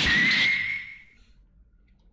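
Video-transition sound effect: a sudden whoosh carrying a whistle-like tone that rises slightly and then holds, fading out after about a second.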